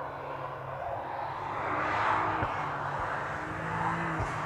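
BMW M3's twin-turbo straight-six engine running at high revs on a race track: a steady engine note with a few short breaks, and a rush of noise that swells about halfway through as the car goes by.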